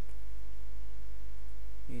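Steady low electrical hum, like mains hum picked up in the recording, with a few faint steady tones above it. A voice starts right at the end.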